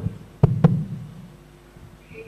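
Microphone handling noise: two quick knocks about a fifth of a second apart, with a low thump, about half a second in.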